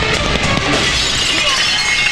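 Glass shattering and breaking over loud action-film background music.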